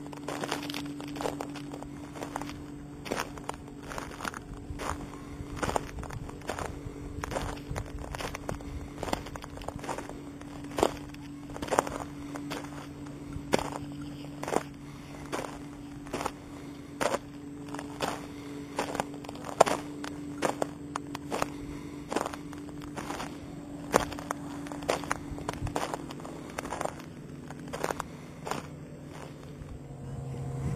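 Footsteps crunching on a gravel path, irregular steps about one or two a second, over a steady low hum.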